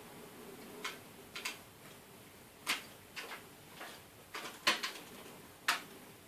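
About a dozen sharp, irregularly spaced plastic clicks. The sound is a replacement keyboard on an Asus Eee PC netbook being pressed and pried into its retaining clips, and the loudest clicks come near the end.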